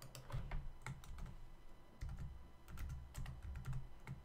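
Computer keyboard typing: an irregular run of keystrokes with a brief lull about halfway through.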